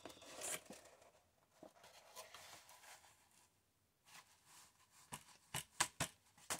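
Faint rustling of a stiff paper collage sheet being handled and turned over by hand, with a quick run of sharp crackles and taps about five seconds in.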